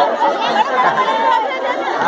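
A crowd of people chattering, many voices talking over one another at once.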